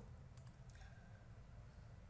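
Near silence with low room hum and a faint computer mouse click or two.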